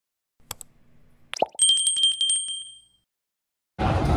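Subscribe-button animation sound effects: a click about half a second in, a short swoosh, then a bell ding that rings with a fast trill for about a second and fades away. Just before the end, the noisy background of a busy indoor place cuts in.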